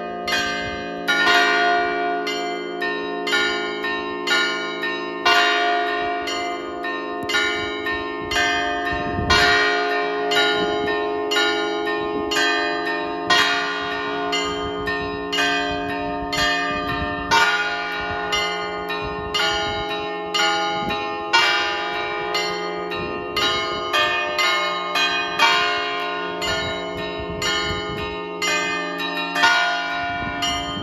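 Seven stationary church bells rung as a programmed matins peal: smaller bells struck in a quick, dense rhythm over the long hum of the larger bells, with a louder deep stroke about every four seconds.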